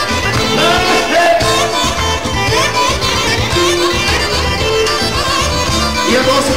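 Live Bosnian folk dance music played loud over a PA, with a steady bass beat under an ornamented melody line.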